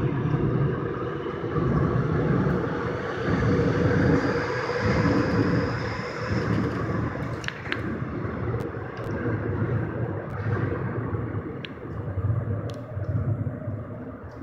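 Seoul Metro Line 7 subway train pulling out of the station and running off into the tunnel: a steady rumble of wheels on rail with a faint rising whine in the first half. Scattered sharp clicks come later as it draws away and slowly fades.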